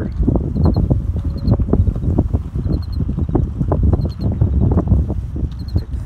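Wind buffeting a phone's microphone: a loud, irregular rumble with crackling gusts.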